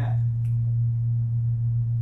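Steady low electrical hum at one unchanging pitch, loud and constant, typical of mains hum picked up in a church sound system or recording chain. A faint click about half a second in.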